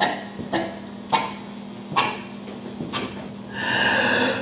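A handful of separate, irregular knocks and thumps, stage handling noise from a performer moving around a microphone stand on a small stage. A steadier, voice-like sound swells in near the end.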